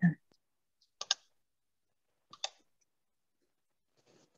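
Clicks from someone working a computer: two quick pairs of sharp clicks, one about a second in and one about two and a half seconds in.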